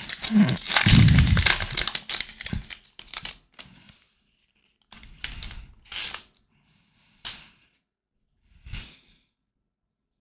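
Plastic wrapper of a 2023 Panini Prestige football card pack being torn open and crinkled by hand, with a dense run of tearing and crinkling over the first three seconds. A few short crinkles follow, and the sound dies away about nine seconds in.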